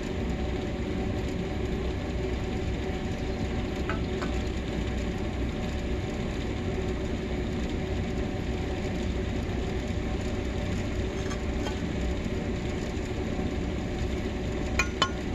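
A steady mechanical hum of an engine running nearby, even throughout, with a few faint clicks of metal drill tooling being handled.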